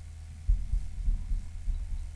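Microphone on a stand being handled and adjusted through a PA system: a run of loud, low, irregular thumps and rumbles starting about half a second in, over a steady low electrical hum from the sound system.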